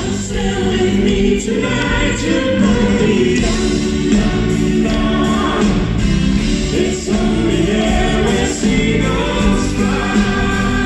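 Live pop band performance: several voices singing together in harmony over a full band of drums, bass, electric guitar and keyboards.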